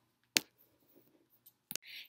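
Two sharp clicks about a second and a half apart, with near quiet in between.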